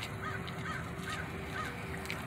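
Faint bird calls: a run of about four short, arched notes, roughly two a second, over steady outdoor background noise.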